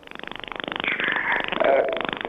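Telephone line with a rapidly pulsing, buzzing distortion, a sign of a bad connection.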